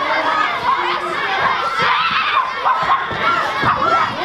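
A crowd of children shouting and cheering together, many high voices overlapping in a steady, loud din.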